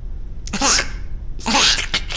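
Two short, breathy wordless vocal sounds from cartoon characters, one about half a second in and another near the end, over a low steady hum.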